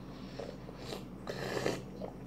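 A toddler sipping from a drink can held to his mouth: two faint short slurps, about a second in and again a moment later, over quiet room tone.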